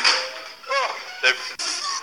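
A sudden sharp crack at the start, then a short wavering pitched sound and a second sharp hit, over music. The sound effects are layered onto a clip of a child being struck by a swinging door.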